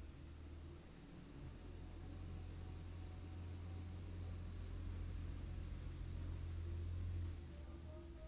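Low engine rumble of a refuse collection lorry, building gradually and dropping off shortly before the end.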